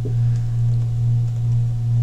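A steady low electrical hum: one constant low tone with a faint higher overtone, unchanging throughout.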